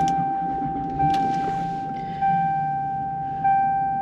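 Lexus SC400 dashboard warning chime sounding as the ignition is switched on for a gauge check: one bell-like tone repeating about every 1.2 seconds, each ring fading before the next, over a faint low hum.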